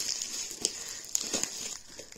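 Clear plastic wrapping crinkling and rustling as a wrapped bundle is handled, with a few sharper crackles, dying down near the end.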